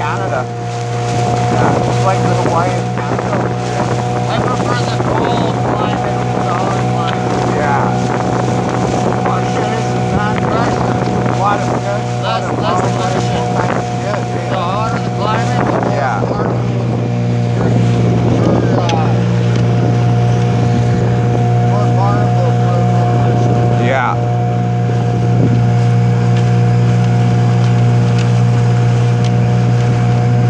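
Small motorboat's engine running steadily while the boat is underway, a constant low tone throughout that gets a little louder in the second half, over the rush of water past the hull.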